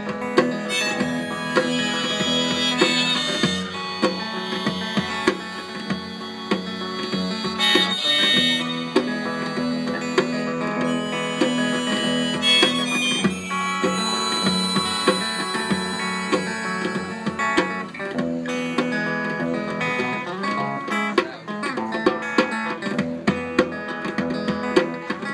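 Instrumental break in a live song: amplified electric guitar with a harmonica lead over hand-played bongos keeping a steady beat.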